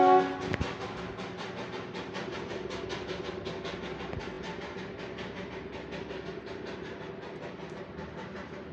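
Darjeeling Himalayan Railway steam locomotive: the tail of its whistle cuts off just after the start, then its exhaust chuffs in a quick, even beat.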